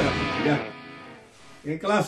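The last chord of a Spanish-language heavy-metal song, electric guitars and band ringing out and fading away within about the first half-second.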